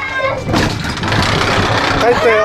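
Metal-framed sliding entrance door being rolled open, a noisy rumble and rattle of the door in its track lasting about a second and a half.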